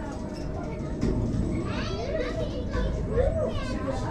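Children and other people chattering and calling out, their voices rising and falling, over a steady low rumble.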